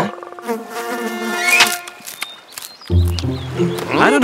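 Cartoon sound effect of a buzzing insect, its buzz sweeping up in pitch a little over a second in, then a lower steady drone near the end.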